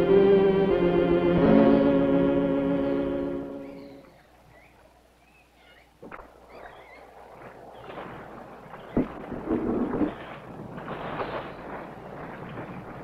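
Orchestral film score with held string chords, fading out about four seconds in. After a sharp click, faint, uneven splashing and knocking follow as a small wooden rowboat is rowed in to a riverbank, with one clear knock near the middle.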